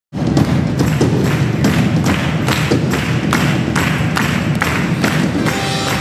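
Steady rhythmic hand claps, a little over two a second, over the low sound of a band opening a worship song.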